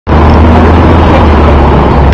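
Loud, steady low rumble of city street noise: traffic, picked up on a handheld camera's microphone. It starts abruptly at the very beginning and holds level throughout.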